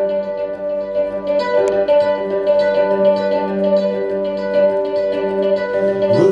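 Solo acoustic plucked-string instrument playing the instrumental opening of a folk song, a picked melody over held low notes.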